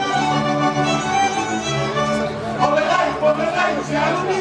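Slovak folk string band playing a tune: fiddles over accordion and double bass.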